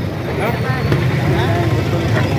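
People talking at close range over a steady low rumble of outdoor crowd and background noise.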